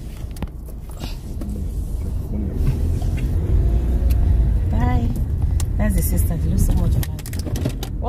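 Car cabin rumble from the engine and tyres while driving, low and steady, growing louder about a second in and staying strong through the middle. Short bits of voices come through over it.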